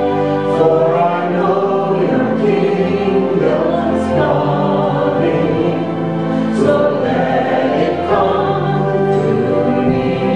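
Contemporary Christian song performed live: women's voices singing together in sustained phrases over acoustic guitar, keyboard and drums.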